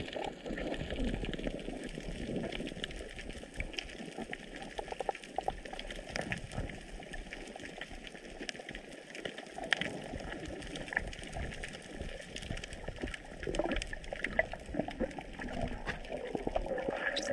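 Underwater ambience picked up by a submerged camera: a muffled, steady wash of water noise, dotted with many small scattered clicks and crackles.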